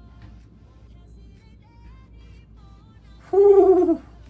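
Faint background music with a few short melodic notes, then near the end a man's loud, falling "ooh" of admiration lasting under a second.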